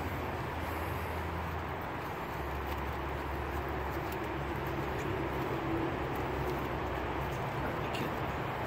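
Steady low outdoor rumble and hum, like engine or traffic noise, holding an even level throughout with no clear handling sounds standing out.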